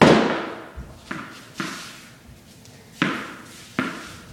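Thrown tennis balls smacking into a wooden wall and a concrete floor: five sharp hits, the first and loudest echoing through the large room, the rest about a second in, half a second later, about three seconds in and just before the end.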